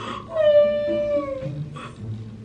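A woman's pretend crying: one high, held wailing whimper of about a second that falls slightly at its end, followed by a short sharp breath.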